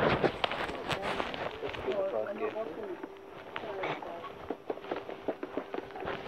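Shop-floor ambience while walking: footsteps and small knocks, a loud burst of handling noise on the phone's microphone at the start, and indistinct voices in the background.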